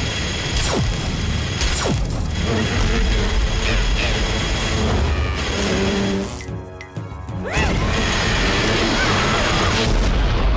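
Cartoon fight sound effects mixed with action music: continuous mechanical whirring and crashing from spinning drill attacks and energy blasts, with a short drop in loudness about six and a half seconds in.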